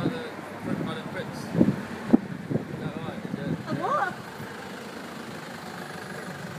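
The engine of an open-top vintage-style car idling with a steady low rumble, under indistinct voices, with two sharp knocks about a second and a half and two seconds in.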